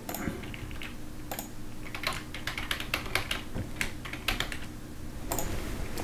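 Typing on a computer keyboard: a run of quick, irregular key clicks that stops about five seconds in.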